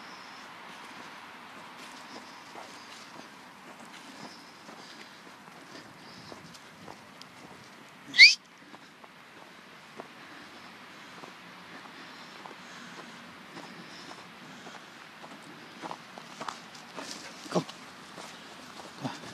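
Footsteps crunching through snow, with a few louder crunches near the end. About eight seconds in, a single short whistle rising quickly in pitch is the loudest sound.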